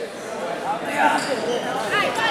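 Indistinct voices of spectators and coaches calling out, echoing in a large gym.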